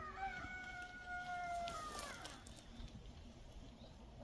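A rooster crowing once: a single drawn-out call of about two seconds that drops in pitch at the end.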